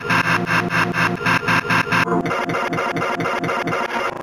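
A short sound snippet repeated rapidly, about six to seven times a second, in a stuttering loop. About halfway through the loop changes: the higher part drops out and the lower part slides in pitch with each repeat.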